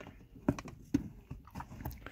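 A few hard plastic clicks and knocks as the jump starter's clamp-lead connector is pushed into the lithium power bank's socket and handled, the two loudest about half a second and a second in.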